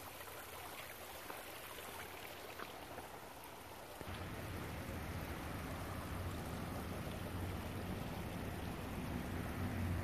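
Steady, faint outdoor background hiss with a few light ticks. About four seconds in it steps up to a louder steady noise with a low hum underneath.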